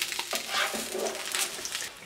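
Grilled sandwich sizzling on a hot nonstick griddle pan as a slotted spatula slides under it and flips it, with a few short scrapes and taps of the spatula against the pan.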